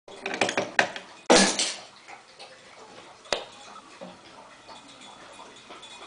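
Wooden toy trains clacking and knocking against each other and a wooden tabletop as they are pushed and handled: a quick cluster of knocks, a louder clatter about a second and a half in, then a couple of single clicks.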